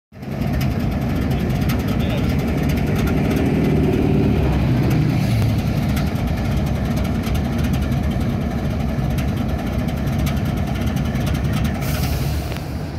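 Diesel locomotive engines idling close below, a steady low rumble that swells a little between about three and five seconds in.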